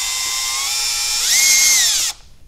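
Makita cordless drill/driver running, backing out the plastic spring adjustment button on a Model 143 gas regulator. Its motor whine is steady, then jumps higher and louder a little after a second in.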